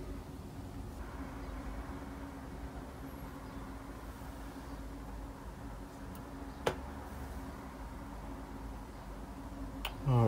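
Quiet room tone with a low steady hum, and one short click about two-thirds of the way in.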